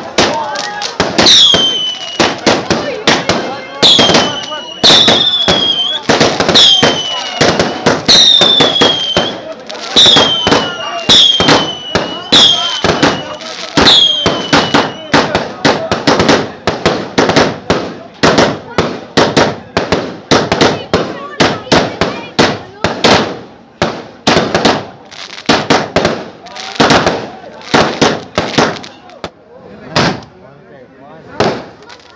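A rapid volley of aerial fireworks: sharp bangs and crackles follow one another throughout. Over the first fifteen seconds about ten shots each carry a high whistle that falls in pitch.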